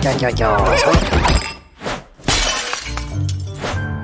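A cartoon character's wordless, wavering vocal cry, then a short glass-shattering sound effect about two and a half seconds in, followed by background music.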